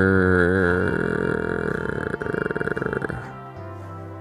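A person's voice making a long, drawn-out 'grrr' bear growl, wavering at first and then rough and rattly, stopping about three seconds in. Quieter background music plays underneath.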